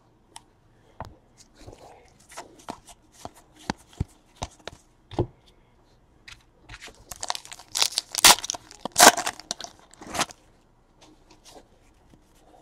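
Scattered light clicks and taps of trading cards being handled and set down. Then, from about seven seconds in, a few seconds of loud crinkling and tearing as a card pack's wrapper is ripped open.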